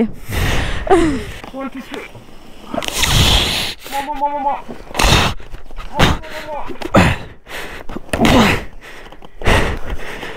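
Two riders grunting, gasping and breathing hard in short repeated bursts as they heave a fallen, fully loaded motorcycle back upright.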